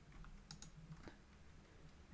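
Faint computer keyboard keystrokes: a few scattered clicks over a low steady hum.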